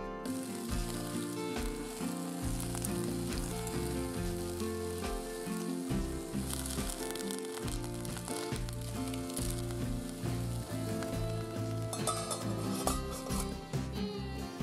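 Pork belly and bean sprouts sizzling in a frying pan. The sizzle starts suddenly just after the start and runs under background music.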